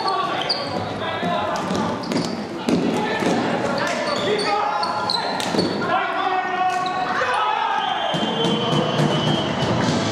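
Live floorball play in a large, echoing sports hall: sharp clacks of sticks and the plastic ball on the court, mixed with players' shouting voices.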